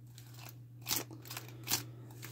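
Faint handling sounds of a clawed leather glove being turned on the hand, with two soft clicks of the blades and plates shifting, about a second in and again near the end, over a steady low hum.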